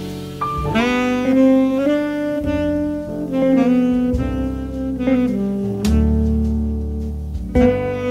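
Jazz quintet recording: saxophone playing a slow melody of long held notes over double bass.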